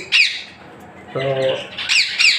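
Indian ringneck parakeet squawking: a loud, sharp call falling in pitch at the start, and another near the end.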